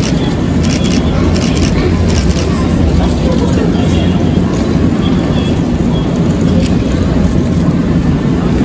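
Nankai 6200-series electric train approaching slowly along the platform, a steady low rumble that fills the station.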